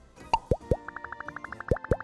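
Cartoon 'plop' sound effects: two pairs of quick bloops, each dropping sharply in pitch, with a fast, even run of ticks between and under the second pair, over soft background music.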